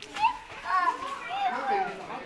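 Several people talking over one another, children's voices among them.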